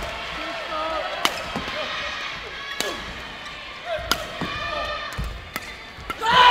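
Badminton doubles rally: sharp cracks of rackets striking the shuttlecock, several over a few seconds, with shoes squeaking on the court floor and spectators' voices behind.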